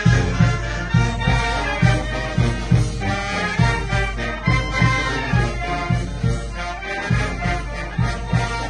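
Brass band playing a lively dance tune, trumpets and trombones carrying the melody over a steady bass beat of about two beats a second.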